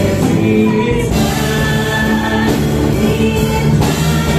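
A mixed choir of men and women singing a gospel hymn in unison through microphones, with live band accompaniment, holding long sustained notes.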